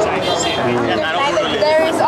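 Speech only: several people talking, their voices at times overlapping, with street chatter behind.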